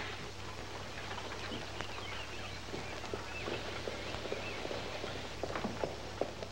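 Faint outdoor street ambience over a steady low hum, with a few faint wavering chirps in the middle and light footstep-like clicks near the end.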